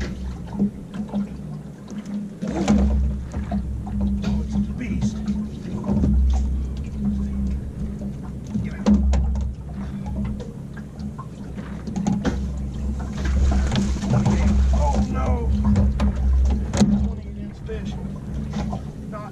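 Low rumble and a hum that cut in and out every second or two aboard a small aluminum fishing boat, with scattered knocks and brief indistinct voice sounds.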